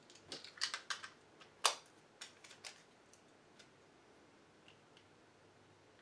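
A scatter of small, sharp clicks and taps from hard little parts being handled: a drill bit and its plastic bit case picked up and set down on a cutting mat. The clicks come in the first three seconds, the loudest about a second and a half in, then it goes quiet.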